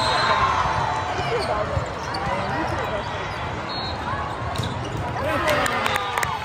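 Indoor volleyball rally: the ball smacked by players' hands and forearms, with a cluster of sharp hits near the end, over players calling out and the chatter of spectators.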